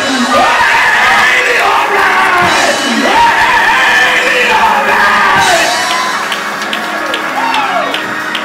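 A preacher's voice amplified through a microphone and church sound system, delivering the sermon in a half-sung chant with long sliding pitches. It eases off a little about six seconds in.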